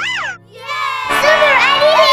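A group of children shouting and cheering, loud from about a second in, after a short pitch that slides up and back down near the start.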